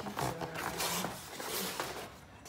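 Cardboard pizza box handled and turned in the hands, a dense run of scraping and rustling.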